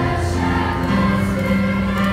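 A school choir of middle-school children singing, holding long notes that step from one pitch to the next about once a second.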